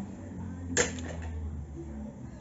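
A single short sharp click about three-quarters of a second in, over a faint low steady hum.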